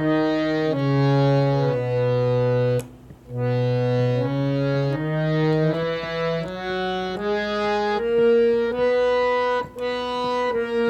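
Harmonium playing the B major scale one note at a time, each reedy note held for about a second before stepping to the next, with a brief break about three seconds in.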